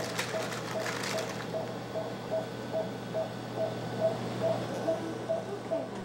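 Operating-room patient monitor beeping with each heartbeat of the sedated child: a short, steady, mid-pitched beep repeating evenly about two and a half times a second, over a low steady equipment hum.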